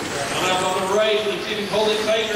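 A man's voice talking, in the manner of race commentary.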